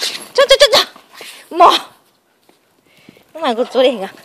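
A person's voice in several short, high-pitched bursts with pauses between them, with a quiet stretch in the middle.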